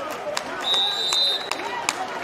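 A single steady, high-pitched whistle blast of about three-quarters of a second, starting about half a second in, as the wrestling period's clock reaches zero. It marks the end of the rideout period. Scattered knocks and crowd murmur run underneath.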